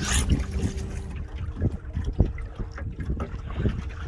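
Wind buffeting a phone microphone over choppy water lapping against a canoe, with irregular small knocks and splashes, a faint steady hum from the canoe's electric motor, and a brief gust right at the start.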